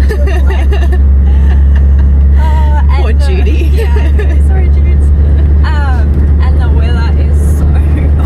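Steady low drone of a car's engine and tyres heard from inside the cabin while driving. Women's laughter and chatter run over it.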